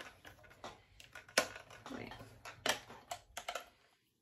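Small hard-plastic clicks and taps as a detachable GoPro mount is fitted onto a full-face snorkel mask. The clicks are irregular, and the loudest comes about one and a half seconds in.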